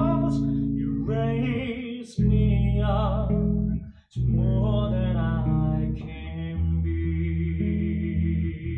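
A male singer sings sustained phrases with vibrato over plucked electric bass guitar notes in a live duo performance. About six seconds in the voice stops, leaving the bass and a steady held higher tone.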